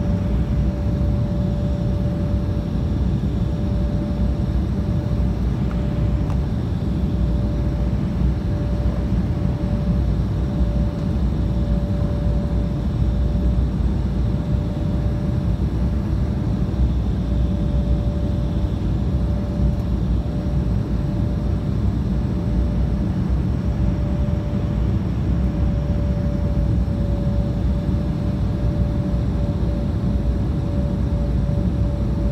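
Steady cabin noise of a jet airliner in flight: engine and airflow noise heaviest in the low range, with one constant hum-like tone above it.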